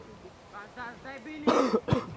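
Faint shouts of players on a football pitch, then about a second and a half in a loud, cough-like burst close to the microphone. It ends in a single sharp thud of the ball being kicked long by the goalkeeper.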